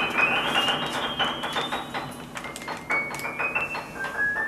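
Small harp being plucked: a quick run of ringing notes stepping upward, growing softer toward the end.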